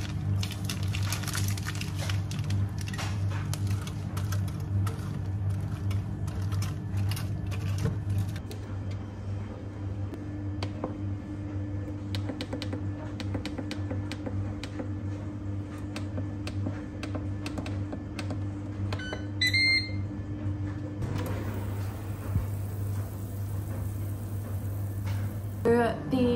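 A Ninja Speedi air fryer's control panel beeps a few times about 19 seconds in as it is set to bake. Beneath it is a steady low hum, with scattered clicks and rustles as cheese is sprinkled from a plastic bag.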